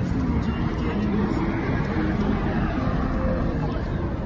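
Street ambience with a steady rumble of road traffic and wind buffeting the phone's microphone, with faint voices in the background.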